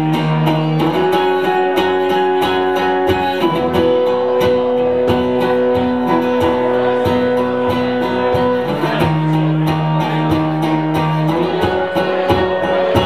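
Acoustic guitar strummed in a steady rhythm, an instrumental passage with the chord changing every few seconds.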